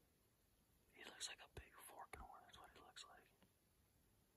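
Faint whispering for about two seconds, with two soft knocks partway through.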